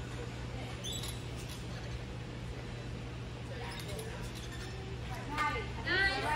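Steady low hum of a large gym's ventilation, with a few faint squeaks about a second in and indistinct voices in the background that grow louder near the end.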